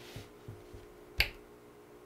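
A single sharp click a little over a second in, with a couple of faint ticks and a soft hiss before it.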